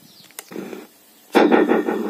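One sharp click of a small plastic push button on a mini Bluetooth speaker, pressed in a quiet moment. A man's voice comes in about a second and a half in.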